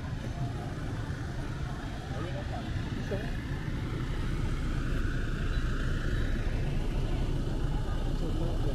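A Ford Transit minibus engine running steadily as the van pulls up and idles close by, over city traffic noise, with a low rumble throughout.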